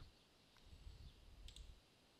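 Faint computer mouse clicks over a low hum: a soft click about half a second in and a sharper double click about a second and a half in, clicking the browser's refresh button.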